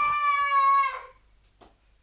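A high, drawn-out wailing call lasting about a second, steady in pitch and dropping away at the end.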